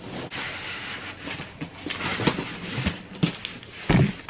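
Cardboard boxes and packaging being handled: rustling and scraping with scattered light knocks, and a louder thump near the end.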